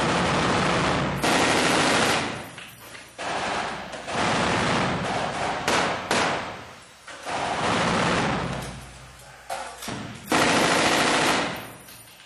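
Belt-fed machine gun fired from inside a room in repeated bursts of about one to two seconds with short pauses between, eight or so in all.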